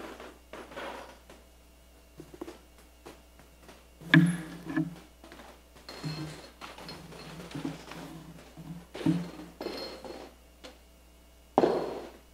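Scattered wooden knocks and rustling from people moving about, with brief low voice sounds mixed in; the loudest knocks come about four seconds in and just before the end.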